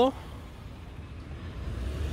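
Low outdoor street noise from road traffic: a low rumble that swells slightly toward the end.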